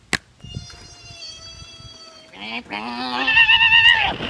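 A man's wordless yell with a wavering, bleat-like quiver. It starts low and breaks into a loud, high-pitched scream for the last second or so.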